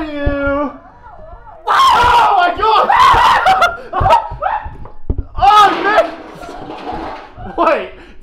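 Young men shouting, shrieking and laughing, starting with one long held yell, and with a few sharp thumps among the voices.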